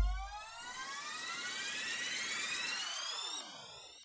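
Logo sting sound effect: a low boom, then a sweep of many tones, some rising and some falling so that they cross in the middle, fading out near the end.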